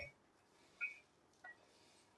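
Near silence: room tone, with one faint, brief sound just under a second in.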